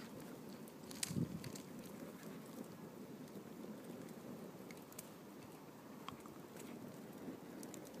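Wood fire burning in a metal fire pit, crackling faintly with a few scattered sharp pops.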